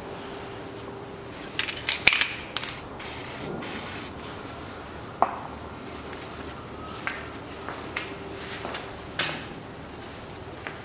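Metal hand tools clinking and rattling against the sway bar bracket bolts under the car, in scattered bursts, with one sharp click about five seconds in. About three seconds in there is a short hiss like a spray.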